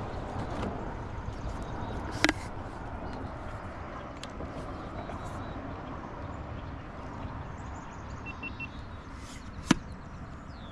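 Paddling a plastic sit-on-top kayak: a steady low rumble of wind on the microphone, with two sharp knocks of the paddle against the hull, about two seconds in and just before the end, the second the louder.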